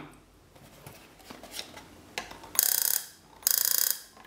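Spark gap of a homemade EMP device firing in two bursts of about half a second each, a rapid crackling buzz of sparks jumping the gap as high voltage is fed to the coil. Quiet handling noise comes before the bursts.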